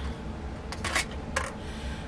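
Three short, light clicks and rustles a little under a second in, from hands handling a metal crochet hook and yarn.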